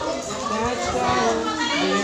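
Children's voices talking and playing, several at once.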